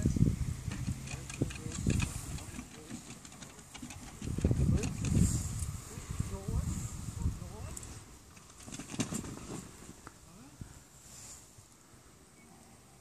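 Faint, indistinct talk with low rumbling bursts on the microphone near the start and again about four to six seconds in.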